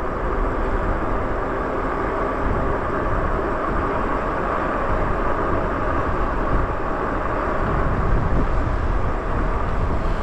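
Steady wind rush buffeting the microphone, with the rolling noise of a fat-tire e-bike on pavement, while riding along a street at speed.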